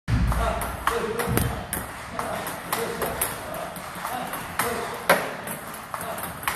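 Table tennis balls being fed and struck back with a paddle in a multiball drill: sharp plastic clicks of ball on paddle and table, a steady run of about two a second.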